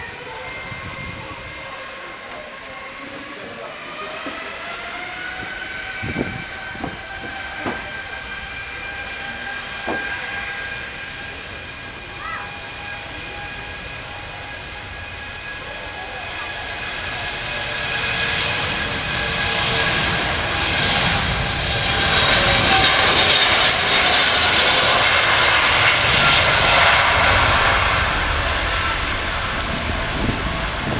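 Airbus A330-900neo's Rolls-Royce Trent 7000 turbofans spooling up for takeoff: a whine of several tones rising in pitch a few seconds in, then a roar that builds as the airliner accelerates down the runway, loudest past the middle and easing slightly near the end.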